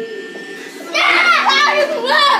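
Children playing: a loud, high-pitched shout from a child starts about a second in and carries on through the end, with no clear words, over a faint steady low hum.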